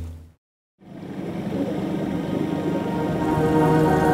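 Background music fades out into a moment of silence about half a second in, then a new piece of held, layered tones fades in and slowly grows louder.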